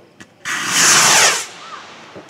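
Model rocket motor igniting and burning with a loud rushing hiss for about a second, then fading quickly as the rocket climbs away.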